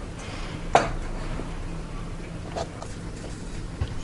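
A sharp knock a little under a second in, then a couple of softer taps: kitchen utensils and silicone cupcake moulds being handled around a steel mixing bowl.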